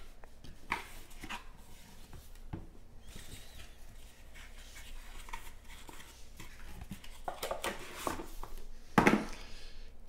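Hands handling a cardboard card box and plastic card cases on a tabletop: light rustling, scraping and small clicks, with a louder knock and scrape about nine seconds in.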